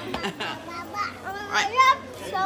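A young child's playful vocalising and shouting, ending in a loud, high-pitched squeal near the end.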